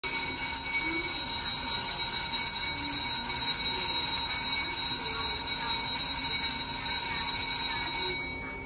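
Electric platform departure bell ringing continuously, a loud high metallic ring that stops abruptly at the very end. It is the warning that the train is about to leave.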